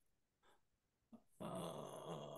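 A short burst of garbled, distorted voice over the video call, starting about a second and a half in after a faint click. It is the kind of break-up that an unstable internet connection gives a participant's speech.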